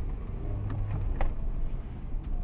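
Car running slowly over a rough road, heard from inside the cabin: a steady low engine and tyre rumble with a couple of light clicks or rattles about a second in.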